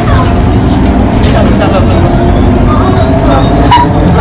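Steady low engine and road rumble inside a city bus, with people's voices talking over it.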